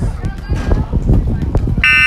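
Basketball game noise with voices and scattered knocks, then near the end a loud, steady buzzer blast that starts suddenly.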